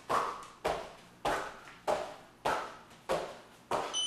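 Sneakered feet landing on a hardwood floor in repeated two-footed hops, a thud about every two-thirds of a second, seven landings in all.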